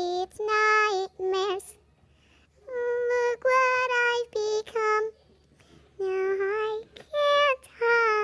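A young voice singing a slow melody in held, separate notes, with short silent pauses between the phrases.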